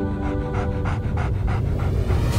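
Border collie panting quickly with her mouth open, about four breaths a second, over background music.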